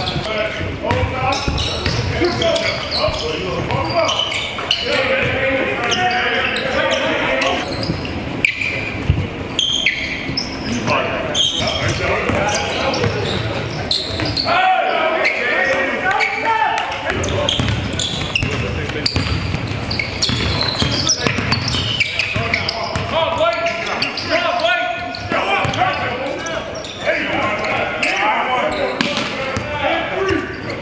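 Basketball scrimmage on a hardwood gym floor: the ball bouncing and players and coaches calling out and chattering, all echoing in a large practice gym. The sound breaks off briefly about halfway through.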